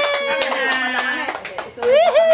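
Several hand claps at an uneven pace, under a person's drawn-out vocal note that slowly falls in pitch. A fresh vocal note swoops up near the end.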